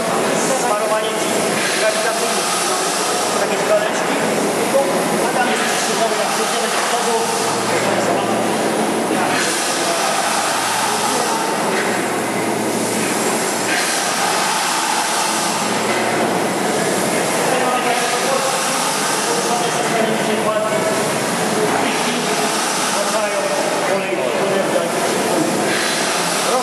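Large steam winding engine running, its flywheel and crank turning with a steady mechanical rumble and hiss. Voices can be heard alongside.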